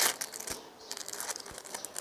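Thin plastic film of an individually wrapped burger cheese slice crinkling as it is peeled open by hand, in a run of short crackles.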